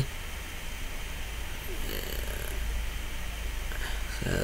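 A steady low background hum with a faint, soft sound about halfway through; no clear sound of the polishing itself.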